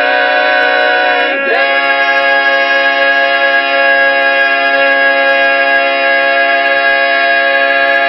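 Barbershop quartet singing a cappella, holding the song's closing chord: one change of chord about a second and a half in, then a single long sustained chord.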